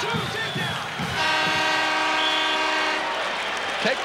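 Arena time-keeper's horn sounding once for about two seconds as the match clock runs out, a steady buzz that signals the end of the wrestling match, over crowd noise.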